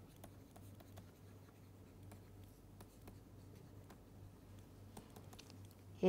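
Faint taps and light scratches of a pen stylus writing on a tablet screen, scattered and irregular, over a low steady hum.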